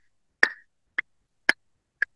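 Three short, sharp clicks about half a second apart, made by a person to mimic a rhythmic banging heard at night.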